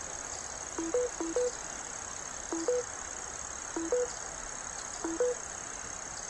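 Smartphone charging chime: a short two-note electronic beep stepping up from a lower to a higher tone, sounding five times at uneven intervals, twice in quick succession about a second in. The phone keeps connecting and dropping charge because the solar panel's USB-C output cuts in and out while clouds cover the sun.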